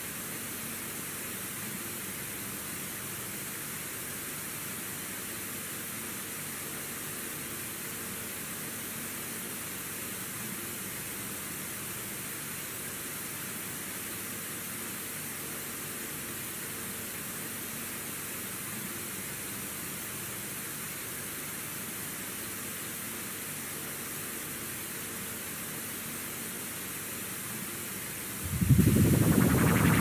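Steady hiss from a blank stretch of VHS tape played back through a video capture device, with a faint low hum under it. Near the end a much louder sound cuts in suddenly: the start of the first logo's soundtrack on the tape.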